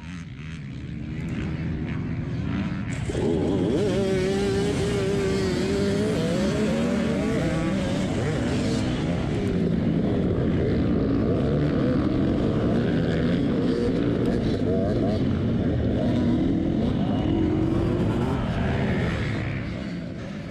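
A field of off-road dirt bikes revving at a race start. The rumble builds over the first few seconds; about three seconds in, the nearest bike's engine comes in loud, and its pitch rises and falls as it accelerates away with the pack.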